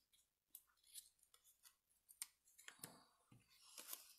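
Faint handling of cardstock and paper: soft rustles and a scatter of small, sharp clicks as a panel is positioned and pressed onto a card.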